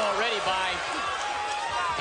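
Speech: a boxing commentator talking over steady arena background noise.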